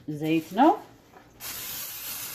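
A voice briefly, then an aerosol can of cooking spray starting to hiss about one and a half seconds in, a steady spray greasing a metal baking pan.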